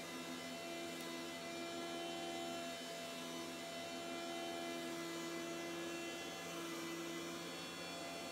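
Electric flour mill (pulverizer) running steadily while grinding rice, a constant hum with several held tones.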